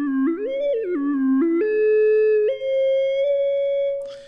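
Orphion iPad app's synthesized tone on its small-thirds palette: one sustained voice stepping up and down in thirds twice, then settling on a held note and stepping up to a higher held note about two and a half seconds in.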